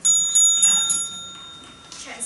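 Small metal bell, such as a debate timekeeper's desk bell, struck about four times in quick succession. Its clear ring fades out over the following second.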